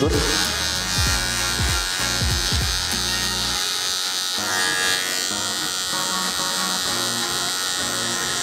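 Cordless hair clipper fitted with a number 1.5 (4.5 mm) guard comb, its motor buzzing steadily as it is worked up through the hair on the side of the head to refresh the blend of a skin fade.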